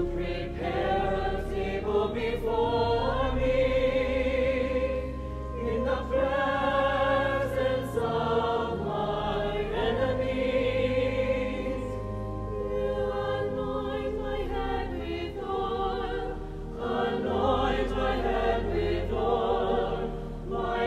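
Mixed choir singing a sacred choral anthem in long, sustained phrases, with steady low notes held beneath. The singing carries the reverberation of a large cathedral.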